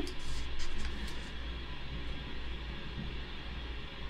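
Bath water running from a tap in another room of the house: a steady hiss of water through the pipes, with a low hum underneath.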